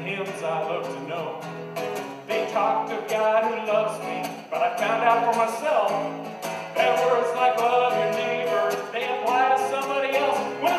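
A man singing to his own strummed acoustic guitar.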